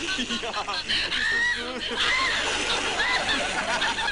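Novelty laugh box playing recorded laughter: a continuous run of short, high-pitched cackling laughs.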